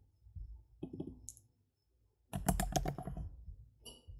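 Typing on a computer keyboard in two bursts: a few scattered keystrokes, a short pause, then a quick run of clicks a little past halfway.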